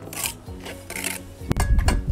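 Steel brick trowel scraping wet mortar on brick, two short scrapes, then a sharp knock about one and a half seconds in as a spirit level is set down on the course.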